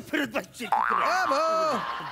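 Brief speech, then about 0.7 s in a cartoon-style comic sound effect: a sudden pitched twang that glides up, then holds and fades slowly.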